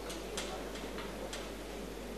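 A few light, sharp clicks, about four in two seconds, from the brass incense vessels being handled on the altar as incense is readied for the brazier.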